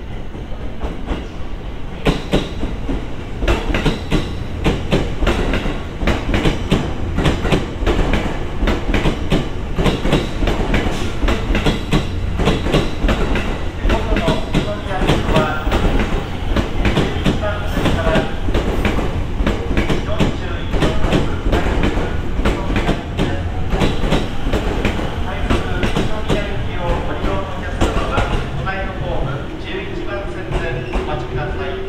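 E257 series electric multiple unit running into the station: a steady low rumble with dense clicking and clattering as its wheels pass over rail joints and points. The clatter thins out near the end as the train slows to a stop at the platform.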